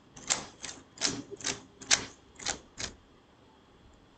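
Keys pressed on a computer keyboard: about seven separate clicks at an uneven pace, stopping about three seconds in.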